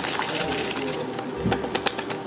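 Dry cornbread mix sliding and rustling out of a cardboard box and its paper liner into a steel mixing bowl of batter, with small crackles of the paper and one sharp click near the end.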